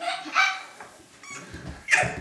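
A dog barking a few times in short, separate barks; the last one, near the end, is the sharpest.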